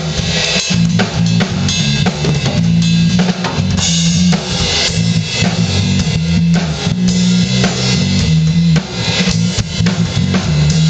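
Funk jam on an acoustic drum kit, with busy cymbals over kick and snare. Under it a low guitar riff repeats every second or two.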